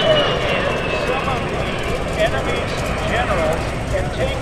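A-10 Thunderbolt II's twin TF34 turbofan engines passing overhead: a steady rush of jet noise with a high whine that falls in pitch and fades in the first second.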